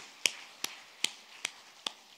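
A man clapping his hands close to the microphones in a steady beat, about two and a half claps a second, the claps slowly getting fainter.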